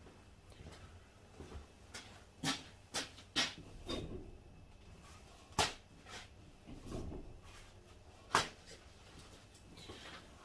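Scattered knocks and rustles of someone moving about a workshop and tearing sheets of paper towel off a wall-mounted roll, with a few sharp clicks spread through an otherwise quiet stretch.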